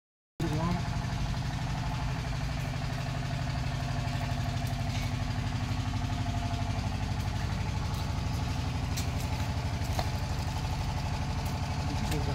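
Motorcycle engine idling steadily with an even, fast pulse.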